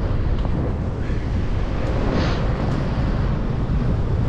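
Wind buffeting the microphone of a camera on a moving bicycle: a steady low rumble with no let-up.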